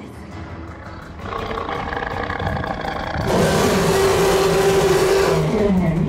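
Tyrannosaurus roar sound effect through a theatre sound system over background music: one long roar starting about halfway through.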